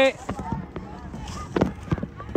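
Scattered voices of a group of people talking and calling out, none clear enough to make out as words, over a low steady background murmur.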